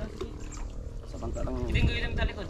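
People's voices talking, loudest near the end, over a low rumble.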